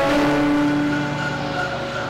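Church organ holding a sustained chord that softens about a second in.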